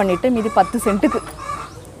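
Kadaknath chickens clucking alongside a woman's voice, the sounds thinning out and fading over the second half.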